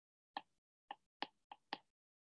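Five faint, light taps of a stylus on a tablet's glass screen while writing.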